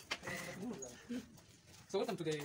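Faint speech, a person's voice talking too quietly for the words to be made out.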